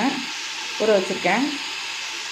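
Prawn masala gravy sizzling steadily as it fries in a large metal pot.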